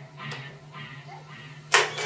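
Electric guitar through a small amplifier, faint notes dying away over a steady low hum, then a sharp strummed chord near the end that rings on.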